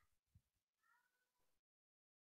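Near silence, with only a very faint pitched sound and a few soft low knocks in the first second and a half.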